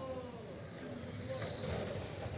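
Radio-controlled race cars running on an indoor oval, with a short high whine about one and a half seconds in as a car goes by, over background voices.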